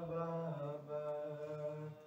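A man's voice chanting a marsiya, an Urdu elegy, in long held melodic notes through a microphone.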